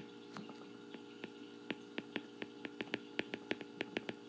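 Faint clicks and taps of a stylus tip on a tablet's glass screen while a word is hand-written, sparse at first and then several a second, over a faint steady hum.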